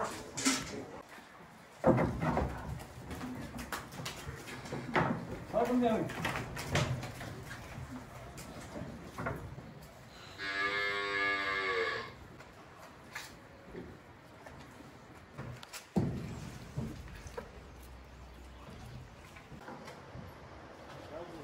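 Cattle mooing once, a single long call of about two seconds near the middle, amid scattered knocks and thumps, the loudest about two seconds in and again near the end.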